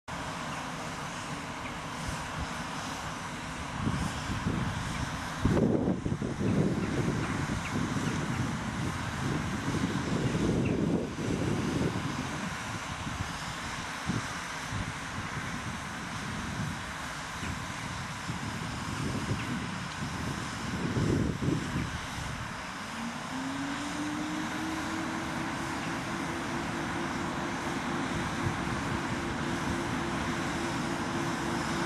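A PKP EP09 electric locomotive at the head of an express train, heard with irregular swells of low rumble. About 23 seconds in, a single tone rises in pitch and levels off into a steady hum as the locomotive's equipment winds up for departure.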